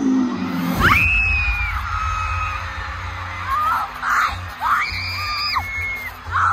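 Live arena concert music over the PA, with a deep bass coming in about a second in. Fans in the crowd scream over it in long high-pitched cries, once about a second in and again around five seconds, with shorter shrieks between.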